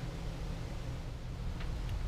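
Steady low hum with a faint even hiss: background room noise, with no distinct event.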